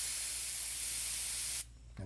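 Iwata Micron airbrush spraying paint with a steady hiss of air, cutting off suddenly about a second and a half in.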